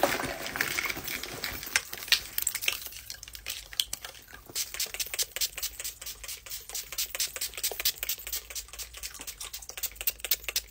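Many quick clicks, taps and rustles of small objects being handled and rummaged through in a handbag.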